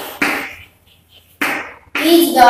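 Chalk writing on a blackboard: two scratchy strokes, each starting sharply and fading quickly, the second about a second after the first.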